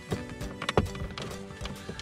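A few sharp plastic clicks and knocks, the loudest just under a second in, as a plastic trim removal tool pries the instrument cluster surround's clips loose. Background music plays underneath.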